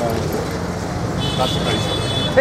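Busy street-market ambience: steady traffic noise with a crowd's background chatter.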